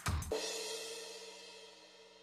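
The closing hit of a TV news intro jingle: one last drum-and-cymbal stroke right at the start, then a held chord and cymbal ringing out and fading away slowly.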